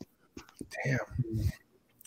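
Speech only: a voice says 'damn' quietly and breathily, with a couple of faint clicks just before it.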